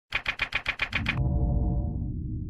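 Logo intro sound effect: a quick run of about eight sharp, evenly spaced clacks, about seven a second, then a low, steady rumbling tone that holds.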